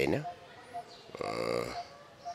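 A man's voice in slow, halting speech: a word trails off at the start. About a second in, after a short pause, comes one drawn-out voiced sound lasting about half a second, like a hesitation sound.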